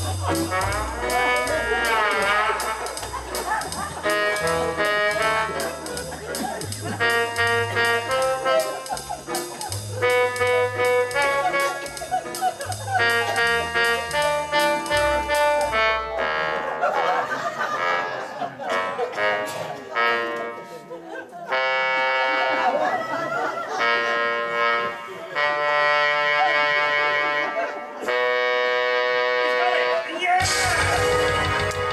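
Electronic organ playing a jazzy tune on a trombone-like brass voice, with sliding glides between notes. A bass line under it stops about halfway, and the brass voice carries on in short phrases.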